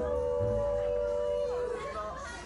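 A young man's mock crying wail sung as a long held note, with a second slightly higher held note joining in harmony. Both notes end shortly before the end.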